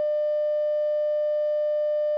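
A steady electronic beep tone at one unchanging mid pitch, held unbroken at a constant level, edited in over the audio.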